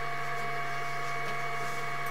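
A steady electrical hum with several high, unwavering whining tones over a faint hiss, as picked up by a sewer inspection camera's recording system.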